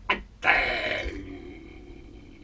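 A person's wordless vocal sound: a brief utterance at the start, then a louder drawn-out one about half a second in that fades out over about a second.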